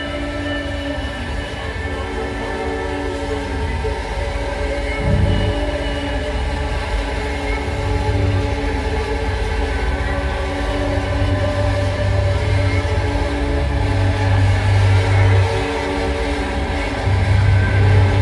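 Loud sustained drone from a live metal band: amplified guitar feedback and noise, several held tones layered over low bass swells that come and go, with no drumbeat. The sound builds gradually.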